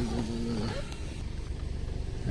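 Vehicle driving slowly over a muddy, rutted dirt road, heard from inside the cabin as a steady low rumble. A short held voice sound trails off in the first half-second.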